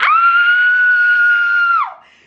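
A young woman's loud, high-pitched scream, held on one steady note for nearly two seconds before dropping off at the end.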